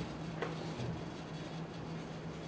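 Lecture-room background: a steady low hum runs throughout, with one faint tick about half a second in.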